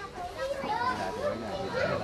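Background chatter of several people talking at once, with some high-pitched voices among them.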